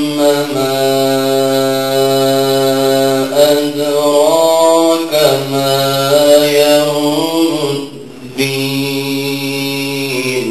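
A man's solo melodic Quran recitation (tilawa) through a microphone, in long held notes with ornamented turns and steps in pitch. A brief breath break comes about eight seconds in before another drawn-out phrase begins.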